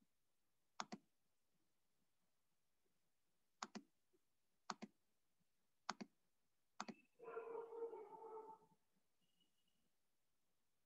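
Computer mouse clicking, five double clicks (press and release) spread over several seconds in a quiet room. Near the end comes a tonal sound about a second and a half long with several steady pitches.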